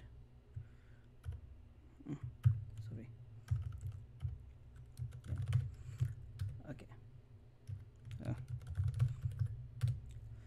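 Keystrokes on a computer keyboard: irregular clicks and taps as commands are typed into a terminal.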